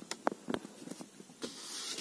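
A few faint, light clicks from fingers on the small buttons of a 1980s car's dashboard digital clock, then a soft hiss swelling near the end as a hand slides across the plastic dash top.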